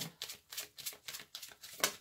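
A deck of oracle cards shuffled by hand: a rapid, irregular run of soft card flicks and slaps, done to make a card jump out of the deck.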